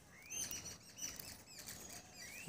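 Small birds chirping faintly, a run of short rising calls repeated several times, with a few soft snaps as mango leaves are pulled off a scion by hand.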